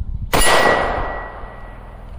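A single rifle shot about a third of a second in, loaded with .223 ammunition. It is followed by a steel target ringing with one clear tone that fades away over about a second and a half.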